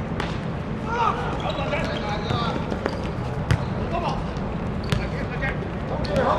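A football kicked and bouncing on a hard-surface court: several sharp thuds, the loudest about halfway through, amid shouts from players.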